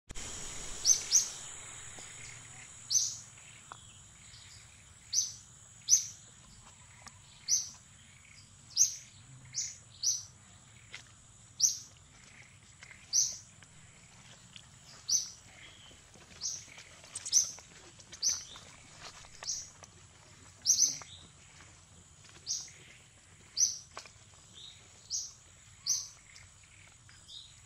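A bird calling over and over with short, high chirps that slide downward, about one a second, over a steady high-pitched whine.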